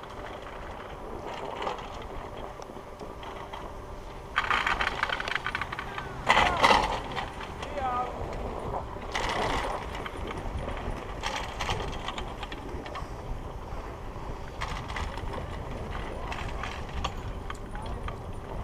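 Skis sliding and scraping over the packed snow of a surface-lift track while being towed uphill, with louder rasping spells of a second or two, the loudest about six seconds in.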